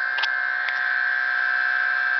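Bedini-style pulse motor running, its coil pulsing to give a steady high-pitched whine with a fainter lower tone beneath. Two light clicks come about a quarter and three-quarters of a second in.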